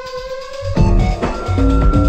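Early-1990s techno/house DJ mix: held synth tones over a thin low end, then about three-quarters of a second in the heavy bass and a busy pattern of short synth notes come back in, with one long high tone held over them.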